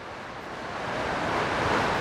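Wind noise on the microphone: a rushing hiss that grows gradually louder.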